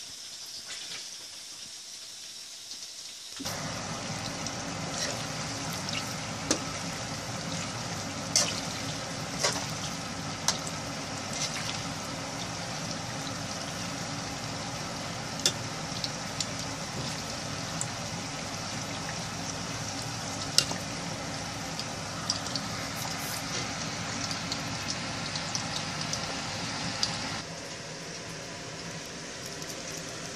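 Chicken skins deep-frying in oil: a steady sizzle with scattered sharp crackles and pops. It starts abruptly a few seconds in and drops away just before the end.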